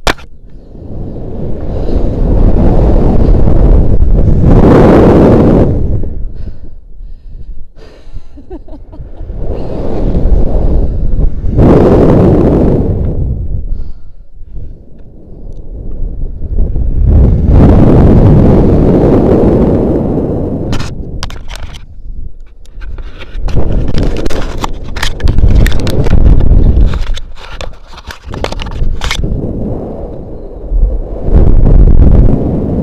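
Wind rushing over a body-worn action camera's microphone as a rope jumper swings on the rope. It swells and fades in long waves about every six to seven seconds, loudest at each pass through the bottom of the swing. Scattered sharp clicks and rattles come in the second half.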